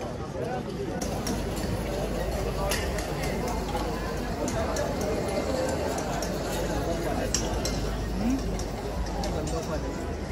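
Hubbub of a crowded restaurant: many diners talking at once, with frequent short clinks of plates, glasses and cutlery throughout.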